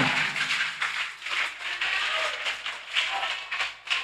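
A pause in a speech in a reverberant hall. The last word echoes away, then there is low hall noise with a few faint scattered sounds.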